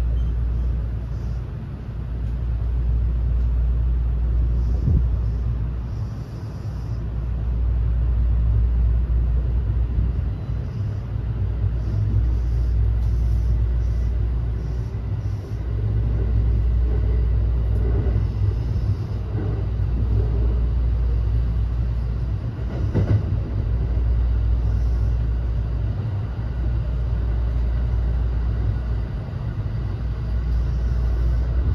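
Interior running sound of a JR West 321 series electric train, heard inside the unpowered trailer car Saha 321-31: a steady low rumble of wheels on rail that swells and eases, with a few sharp clicks.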